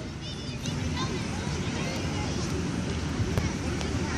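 Distant voices of players and spectators calling out across a ballfield, over a steady low outdoor rumble.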